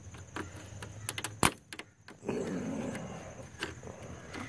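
A thin flathead screwdriver prying at the plastic clip that holds the fan shroud to a BMW E36 radiator: a few small clicks, with one sharp click about a second and a half in. A rough, noisy sound follows for about a second.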